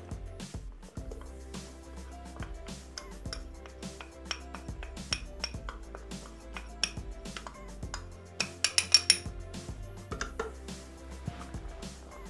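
A series of light glass-and-metal clinks as a small glass of cornstarch is tipped and tapped into a Thermomix's stainless-steel mixing bowl, the loudest cluster of clinks about eight and a half to nine seconds in. Soft background music plays underneath.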